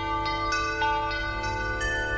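Background music: held notes that ring on, a new one coming in about every half second, over a low steady drone.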